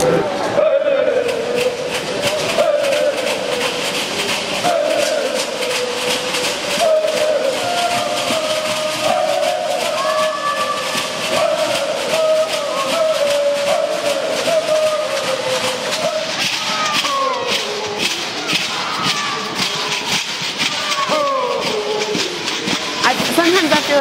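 Muscogee (Creek) stomp dance: turtle-shell shakers worn on the women dancers' legs rattle in a fast, steady, chugging rhythm with each step. Chanted singing carries over the rattling.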